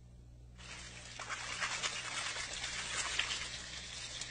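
Water running and splashing, fading in about half a second in and growing louder, over a faint steady low hum.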